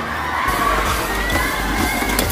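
A crowd of teenage students shouting and cheering, many voices over one another.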